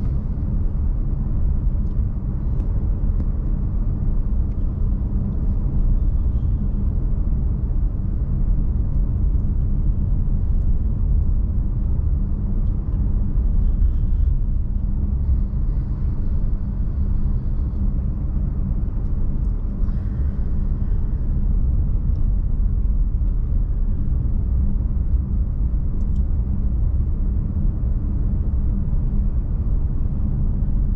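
Car driving, heard from inside the cabin: a steady low rumble of engine and tyres on the road.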